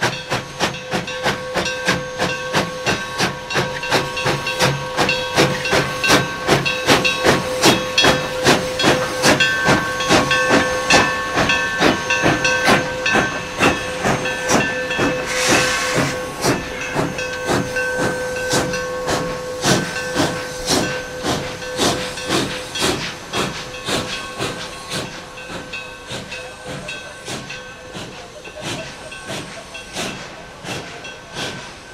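Steam locomotive exhaust chuffing in a steady beat of about two to three beats a second as the engine works its train, with hissing steam throughout. A short loud burst of steam comes about halfway, and the chuffing fades near the end. The engine is a narrow-gauge K-36 class 2-8-2 Mikado.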